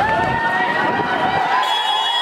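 A crowd of people shouting as they hurry along a street. A long, steady, high-pitched held tone runs over the voices from the start.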